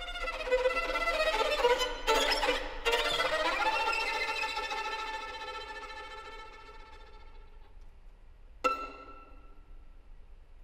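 Solo violin playing contemporary concert music: dense bowed notes with sharp accented strokes about two and three seconds in, then a held sound that fades away over several seconds. Near the end a single sudden sharp note rings out and dies away.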